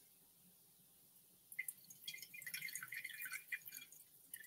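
Red wine poured from a glass decanter into a stemmed wine glass, an irregular splashing trickle that starts about a second and a half in.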